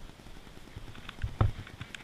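Faint clicks and knocks of handling over low outdoor background noise, with one dull thump about one and a half seconds in.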